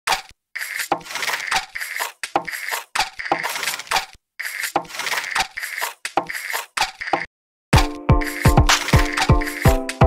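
Percussion beat: a rattly pattern of quick, sharp hits broken by short silent gaps. Near the end, deep falling thumps and sustained pitched mallet notes come in.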